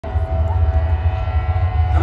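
Festival stage sound system playing a loud, deep, steady bass drone with a fainter held higher note over it.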